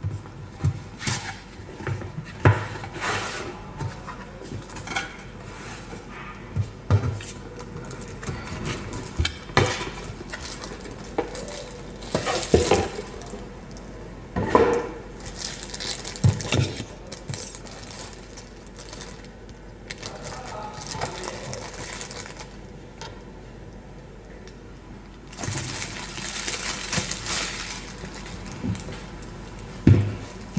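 Cardboard box being opened and unpacked by hand on a wooden table: irregular rustles, scrapes and knocks of cardboard and packaging, with a denser stretch of rustling over the last few seconds as a plastic food storage container is taken out.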